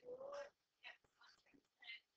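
Faint, distant speaking voice in short bursts, too quiet to make out the words: a student answering from across the classroom.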